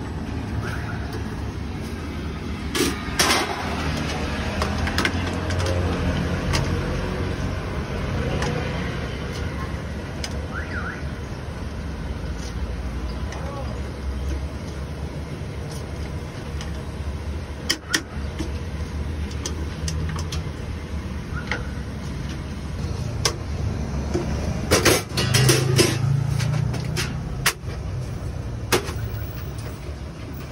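Steady low rumble of street traffic, with several sharp clinks of metal utensils and pans on a stainless-steel food cart, the loudest near the end.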